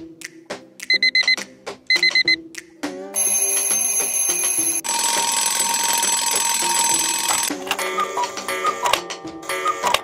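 Cartoon alarm clocks going off one after another over light background music: two groups of four quick electronic beeps, then from about three seconds in a continuous alarm ringing that changes twice, as a different clock takes over each time.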